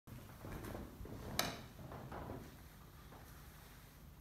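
Quiet room tone with a few faint handling sounds and one short, sharp click about a second and a half in.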